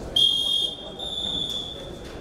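Referee's whistle blown to start a wrestling bout: a short loud, shrill blast, then a longer, softer one at a slightly higher pitch.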